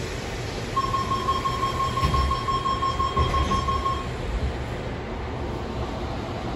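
Train door-closing warning tone: a steady high beep lasting about three seconds, with low thuds as the doors shut, over the carriage's low rumble.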